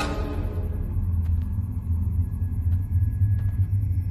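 Suspenseful film score: a steady low rumbling drone, with a sustained chord dying away in the first second and a few faint ticks over it.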